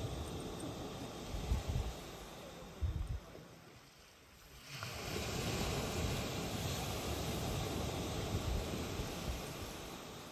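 Outdoor wind and sea-surf noise on a beach, with gusts buffeting the microphone in low thumps early on. The wash dies down for about a second near the middle, then swells back up.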